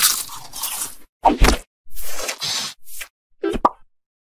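A run of crunching sound effects, about six short crunches in three and a half seconds, the loudest about a second and a half in, put through a G Major 7 audio effect.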